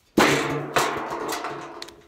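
A metal trash-can lid, shot through, thrown down onto the ground, landing with a loud clang, hitting again a moment later and rattling with a low ring that fades out.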